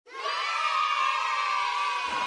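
A crowd of children shouting and cheering together, starting suddenly and holding steady; a dubbed-in crowd sound effect.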